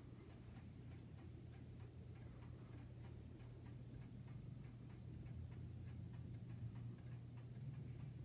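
Antique German wall striking clock's pendulum movement ticking steadily and faintly, over a low steady hum.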